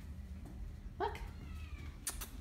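Domestic cat giving one short, rising meow about a second in.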